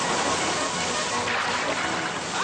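Cartoon water sound effect: a rushing, churning splash of water, a steady loud hiss, over background music.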